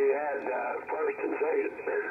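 Single-sideband voice from a 75-meter amateur radio contact, played through a Yaesu FTdx5000 transceiver: a station talking, sounding thin and band-limited by the receiver's roughly 3 kHz filter.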